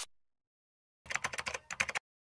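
A computer-keyboard typing sound effect: a quick run of key clicks starting about a second in, with a brief break before a second run.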